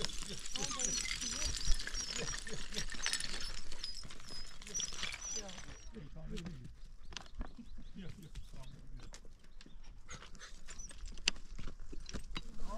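A dog whining and panting, with footsteps and loose stones clicking on rocky ground in the second half.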